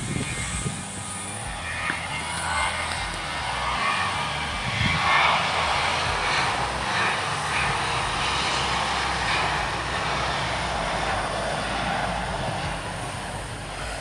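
Passenger jet airliner taking off: a steady jet-engine roar that swells about four seconds in, holds, and eases off near the end.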